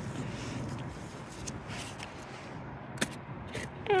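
Faint rustling and scraping of a gloved hand working in a mat of creeping phlox and gravel, with one sharp click about three seconds in, over a low steady background hum.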